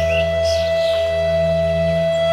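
Flute holding one long, steady note over a low sustained drone, in slow meditation music.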